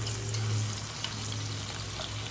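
Sliced green onion and garlic sizzling gently in olive oil in a pan, stirred with a wooden spoon, over a low steady hum.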